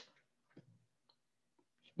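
Near silence: room tone, with one faint short tick about half a second in.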